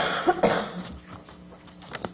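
A person coughing: a short bout of harsh coughs in the first second.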